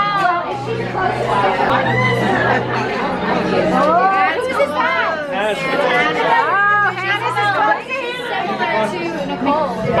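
Several people chattering and exclaiming at once over background music with held low notes.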